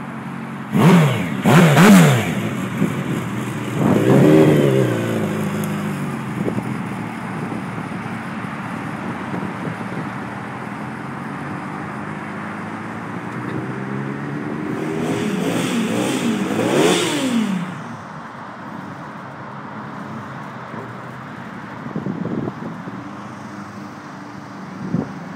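Custom Suzuki Hayabusa's inline-four engine blipped twice in quick, sharp revs as the bike pulls away, then revved hard again about four seconds in and fades as it rides off. About two-thirds of the way through it rises again in a long build of revs under acceleration, peaks, and drops away.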